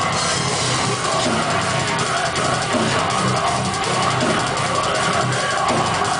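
Heavy metal band playing live: electric guitars and a drum kit, loud and unbroken.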